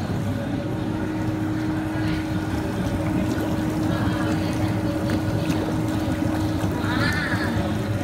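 Baby spa tub's air-bubble jets running: a steady motor hum with water bubbling and churning, a tone settling in about half a second in and holding steady.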